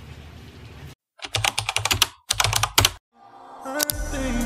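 Computer keyboard typing: two quick runs of key clicks with a short break between them, then music fades in near the end.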